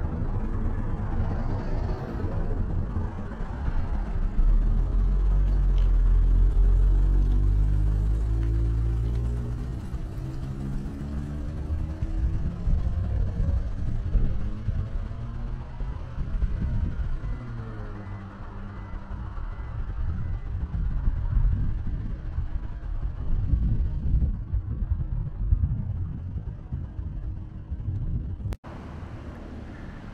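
Motor vehicles on the road, their engines rising in pitch as they pass and accelerate, over a low rumble. This happens twice, loudest about a third of the way in.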